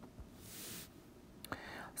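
Faint breathing close to the microphone: a soft breath about half a second in, then a small mouth click and an intake of breath just before speech resumes.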